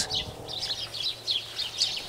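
Small birds chirping, a run of short high chirps in quick succession.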